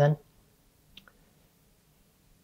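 A woman's speaking voice ending a word, then a quiet room with one faint, short click about a second in.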